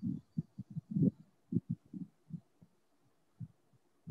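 A quick, irregular run of soft, low thumps that thins out after the first two seconds.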